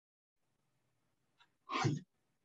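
A quiet stretch, then a single short, sharp vocal burst from a man near the end.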